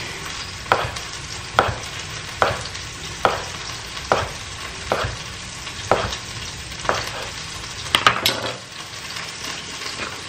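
Knife slicing smoked sausage on a cutting board, about nine evenly spaced cuts roughly one a second, with a brief clatter of a few quick strokes near the end. Chicken frying in a pan keeps up a steady faint sizzle underneath.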